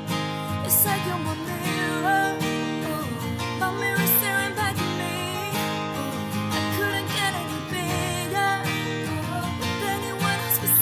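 Instrumental acoustic guitar backing track, strummed chords playing steadily.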